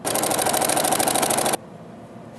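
Singer sewing machine running, stitching through silk tie fabric in a rapid, even rhythm for about a second and a half, then stopping suddenly.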